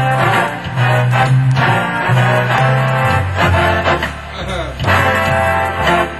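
Hammond Elegante XH-273 organ playing a swing number, with a bass line stepping from note to note under full chords and the organ's own rhythm accompaniment.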